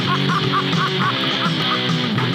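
Rock song playing, with electric guitar and a quick run of short high notes over a steady accompaniment.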